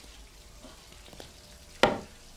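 Faint rustling, then a single sharp knock near the end, loud and short with a brief ring-off.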